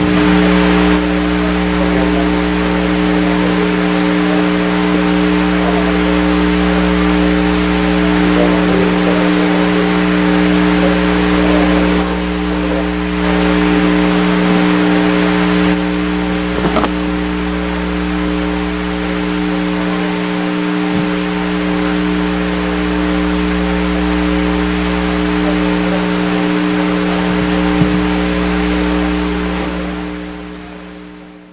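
A loud, steady mechanical hum: several constant tones over a hiss and a low rumble, with a couple of faint clicks, fading out at the very end.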